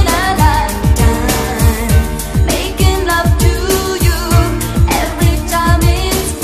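A disco record playing on a turntable: a singer over a steady, fast drum beat.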